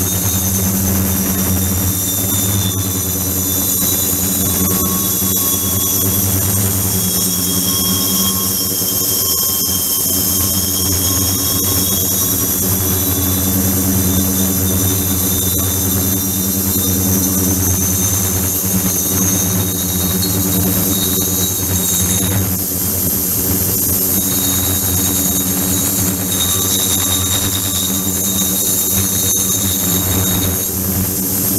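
Ultrasonic tank with its liquid circulation system running: a steady machine hum under a high whine that drifts slightly in pitch.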